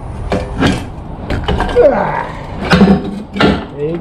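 Metal hand tools being handled: a series of short clinks and knocks as a socket and adapter are fitted together, with some low muttering.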